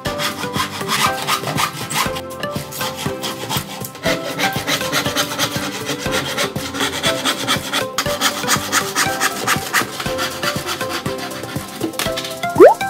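Handsaw cutting through a plywood board, a steady run of rasping back-and-forth strokes.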